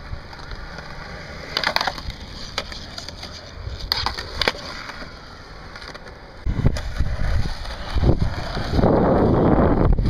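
Skateboard wheels rolling over concrete, with a few sharp clacks early on; the rolling gets louder over the last few seconds.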